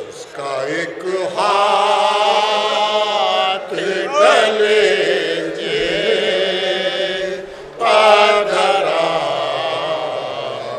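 Sozkhwani: a soz, the mournful chanted Urdu elegy of Muharram, sung in long held phrases whose pitch wavers and glides, with short breaks between phrases.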